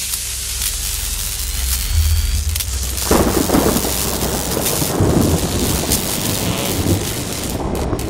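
Cinematic logo-reveal sound effect of rain and thunder: a steady rain-like hiss over a deep rumble, with a heavier rumble coming in about three seconds in.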